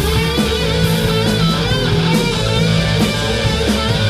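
Live rock band playing at a steady, loud level: electric guitars, some notes bending in pitch, over a drum kit with cymbal hits.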